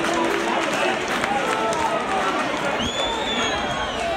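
Football crowd on a terrace: many voices talking and calling at once. A high whistle is held for about a second near the end.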